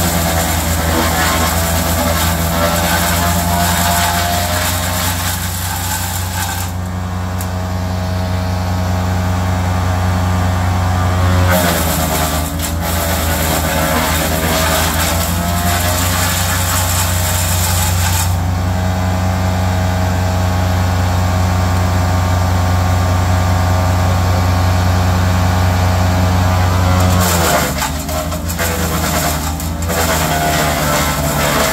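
GL&D SUPER tracked bio chipper running steadily under load, chipping ash branches fed through its roller feed. The engine note dips briefly and climbs back about twelve seconds in and again near the end as the chipper takes the wood.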